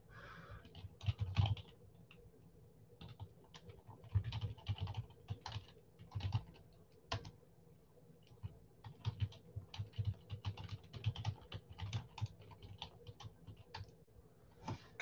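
Typing on a computer keyboard: quick, irregular key clicks in short bursts, with the longest run of typing in the second half.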